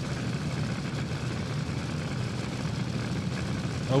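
Injected nitro-burning A/Fuel dragster engines idling at the starting line: a steady low rumble with no revving.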